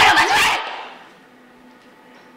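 A woman's short, sharp shout, mixed with knocks of a scuffle, that cuts off about half a second in; after that, only quiet room tone.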